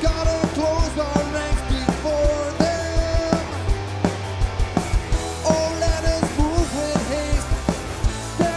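Punk rock band playing live: electric guitars, bass and a drum kit driving a fast, steady beat, with a melody line held and bent over the top.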